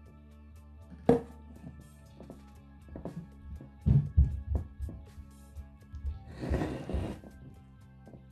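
Silicone spatula knocking and scraping against a glass container while spreading a thick ice cream mixture: a sharp knock about a second in, a cluster of low thumps around four seconds, and a short scrape near seven seconds. Background music plays throughout.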